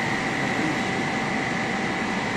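Steady mechanical noise of running factory machinery, with a constant high-pitched whine over it.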